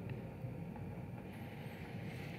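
Quiet room tone between spoken passages: a steady low hum, with one faint tick about half a second in.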